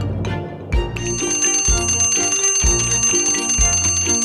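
Twin-bell alarm clock ringing, a continuous metallic bell starting about a second in, over background music with a steady beat.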